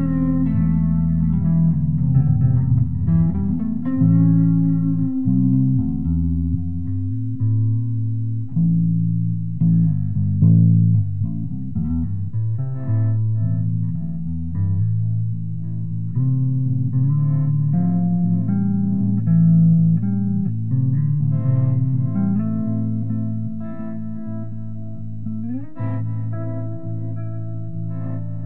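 Instrumental improvised jam on guitar and bass guitar: a moving bass line of plucked notes under improvised guitar notes, with a note sliding upward near the end.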